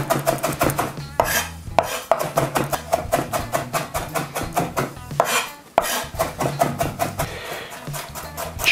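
Chef's knife rapidly chopping dill on a wooden cutting board: a fast, even run of sharp knocks, several strokes a second.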